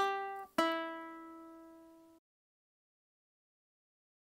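Baritone ukulele strumming: a short chord, then a final chord about half a second in that rings out and fades, cut off suddenly a couple of seconds in.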